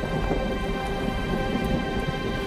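Rushing, rumbling noise of wind and water, like a storm at sea, under steady held music tones.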